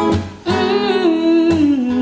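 A soulful woman's voice singing a long, bending line that steps down in pitch, entering about half a second in, over strummed chords on an acoustic guitar.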